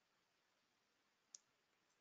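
Near silence with faint hiss and a single short, faint click about a second in.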